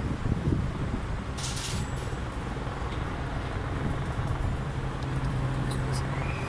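A group of distant helicopters flying overhead, heard as a steady low rotor drone over the city's background noise.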